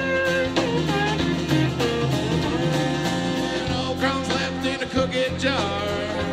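Live country-rock band playing an instrumental break: electric guitar lead over strummed acoustic guitar and drums, the lead notes bending in pitch, with a quick downward slide near the end.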